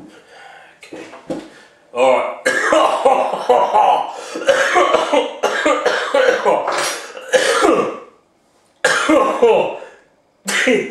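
A man coughing and clearing his throat in long fits, with strained vocal sounds. The fits start about two seconds in and run for several seconds, and after a short pause a second fit comes near the end. The coughing is brought on by the fumes of the extreme hot sauce he has sprayed.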